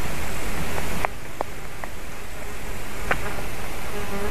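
Steady rushing outdoor noise picked up by a treetop nest-camera microphone, with a few faint short clicks about a second in and again near three seconds.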